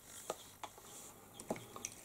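A few faint, light clicks and ticks, about four, spread across two seconds of quiet.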